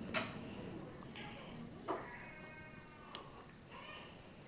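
Wooden chopsticks knocking against a bowl of noodles: a sharp click at the start, another about two seconds in and a fainter one a second later. Between the clicks there is a faint, high-pitched, drawn-out vocal sound.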